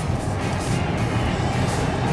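Steady cabin sound inside a 2017 Chevy Spark rolling slowly: the small 1.4-litre four-cylinder engine and tyres, with rock music from the car radio playing under it.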